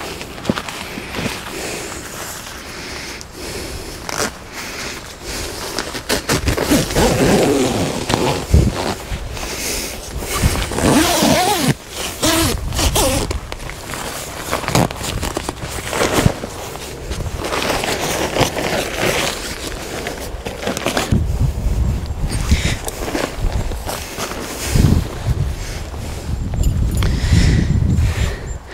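Zip on a camouflage nylon photography hide being worked to join the additional room to the main door, with the fabric rustling and scraping as it is pulled and handled. A low rumble comes in over the last several seconds.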